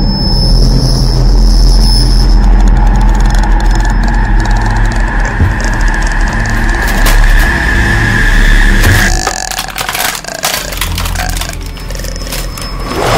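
Horror-film soundtrack drone: a loud, low rumble with a held high tone over it. Both break off about nine seconds in, leaving a quieter low drone.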